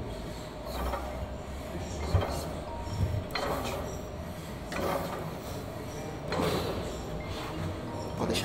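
A set of repetitions on a gym weight machine: a swell of rushing, rubbing noise comes about every second and a half, one per rep, as the lifter works toward failure.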